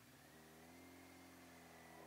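Yamaha YZF600R Thundercat's inline-four engine heard faintly while riding, its note rising a little about half a second in and then holding steady.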